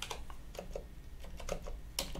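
Computer keyboard typing: a run of light, irregular key clicks as a terminal command is typed.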